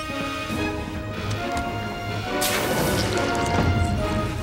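Television soundtrack: dramatic background music over a low rumble, then a sudden loud crash effect about two and a half seconds in that stays loud to the end.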